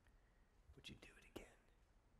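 Near silence, broken about a second in by a brief, faint whisper from a man's voice.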